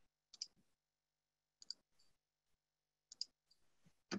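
Three small groups of faint computer mouse clicks, about a second and a half apart, with near silence between.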